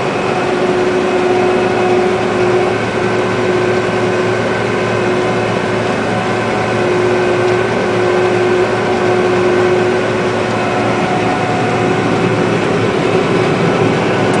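John Deere combine harvester running steadily, heard from inside its cab: an even engine and machinery drone with a constant hum tone.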